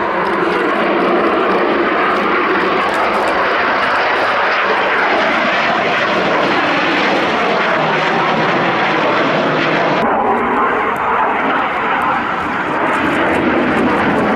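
Yakovlev Yak-130 jet trainer's twin Ivchenko-Progress AI-222-25 turbofan engines running, a loud steady jet noise. About ten seconds in, the sound turns duller as its highest part drops away.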